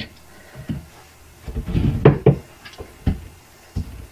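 Short metallic clicks and knocks as pliers pry a broken Oetiker clamp off a driveshaft boot: a cluster of taps in the middle and a few single knocks after.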